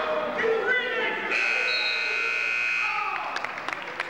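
Wrestling-match timing buzzer sounding one steady tone for about a second and a half, over crowd voices and shouting in a gym.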